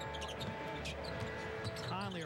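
Arena sound of an indoor basketball game: the ball being dribbled on the hardwood court under a held chord of arena music.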